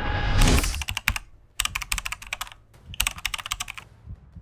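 A short swelling whoosh, then rapid keyboard-typing clicks in three bursts: a typing sound effect for on-screen text being typed out.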